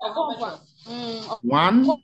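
Speech only: a man talking, with one drawn-out vowel about a second in.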